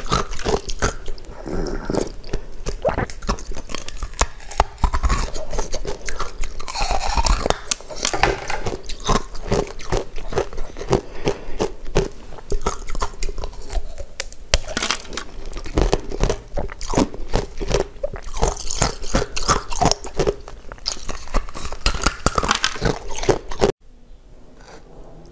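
Close-up crunching and chewing of ice, dense irregular cracks and crunches as it is bitten and broken. The sound stops abruptly just before the end.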